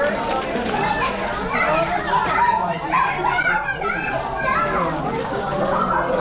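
Several children's voices chattering and calling out over one another, high-pitched and overlapping throughout.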